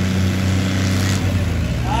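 Diesel engines of two Ghazi 480 tractors running under heavy load as they pull against each other in a tug-of-war, a steady low drone.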